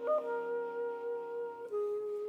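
Clarinet coming in with a brief higher note, then holding a long note and stepping down to a lower one near the end, over the fading chord of a grand piano.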